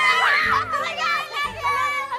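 Several teenage girls shrieking and squealing excitedly over one another, their high voices overlapping, with background music with a steady beat underneath.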